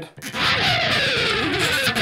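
Pick slide on an electric guitar: the pick edge scraped along the strings, a scraping whoosh falling in pitch for about a second and a half, cutting off abruptly near the end.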